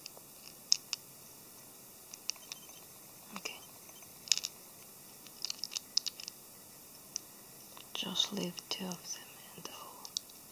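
Small plastic model-kit parts handled between fingers, giving scattered sharp clicks and light scratching as a part is worked toward its hole. A short muttered word comes near the end.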